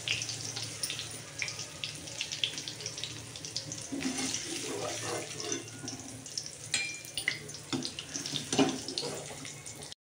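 Hot oil sizzling and crackling in a steel kadhai as fried paneer cubes are lifted out with a slotted steel spoon, with scattered clicks and scrapes of the utensils against the pan.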